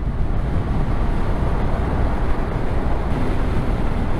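A touring motorcycle riding at road speed: a steady low rumble of wind rush, engine and tyre noise on the bike-mounted microphone.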